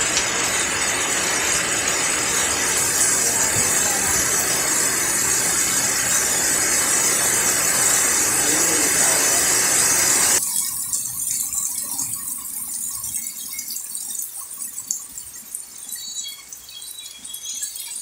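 Heavy rain pouring down onto waterlogged ground, a loud dense hiss. About ten seconds in it cuts off suddenly to a much quieter patter of light rain with scattered drips.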